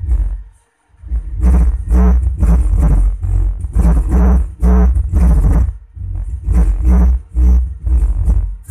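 Music played loud through a homemade 5.1-channel MOSFET amplifier and its speakers, dominated by heavy bass beats about two a second. The sound cuts out briefly just before a second in and then comes back, with a short gap in the beats near the end.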